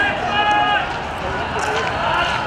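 Men shouting in the street over a noisy outdoor background, with one held, high cry about half a second in.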